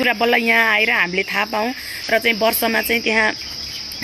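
A steady, high-pitched drone of insects runs behind a woman's talking. Her speech stops a little after three seconds in, leaving the insect drone alone.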